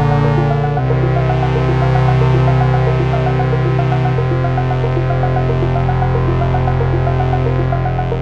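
Skald One four-voice polyphonic Eurorack synthesizer playing: sustained chords from the keyboard change about a second in and again about four seconds in, over a repeating pattern of short sequenced notes from one voice.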